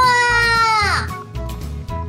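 A high-pitched cartoon voice draws out the last word of the gadget name "Dokodemo Door" (Anywhere Door) in one long held note that slides down in pitch and stops about a second in. Children's background music with a steady bass beat plays underneath.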